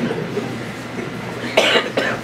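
A person coughs once, a short rough burst about one and a half seconds in.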